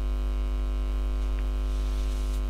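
Steady electrical mains hum: a low drone with a row of evenly spaced, buzzing overtones that holds level throughout.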